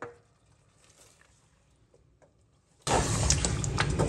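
Near silence, then about three seconds in, chicken sautéing in a steel pot starts to sizzle as it is stirred with a wooden spoon, with a few light knocks.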